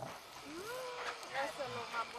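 Whole jalapeño peppers cooking on a propane-fired flat-top griddle, a steady quiet hiss with faint voices over it.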